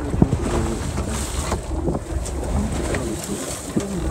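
Fishing boat at sea: a low, steady engine rumble with wind on the microphone, and a few light knocks.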